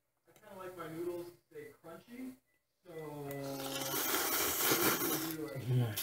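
A long slurp of ramen noodles being sucked into the mouth, starting about three seconds in and growing louder. It follows a couple of seconds of brief voice sounds.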